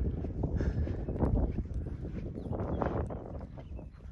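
A hiker walking on a wet, muddy mountain trail: uneven footsteps with rumbling noise on the microphone, which fades near the end.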